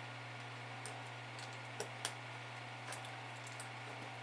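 Light clicks and ticks of a small screwdriver prying at the metal tabs of an FM IF transformer can, a handful of scattered strokes with the two sharpest about two seconds in, over a steady low hum.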